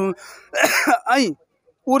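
A man clearing his throat once: a short rasping burst followed by a brief voice-like sound that falls in pitch.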